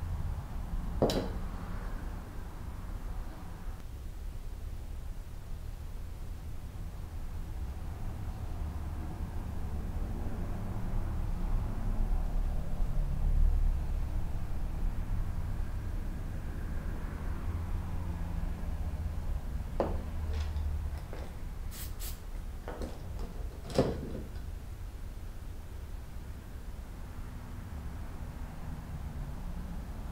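Handling noise at a workbench as small magnets are set with CA glue into a plastic toilet flange: a few sharp clicks and knocks, one about a second in and a cluster about two-thirds of the way through, over a steady low hum.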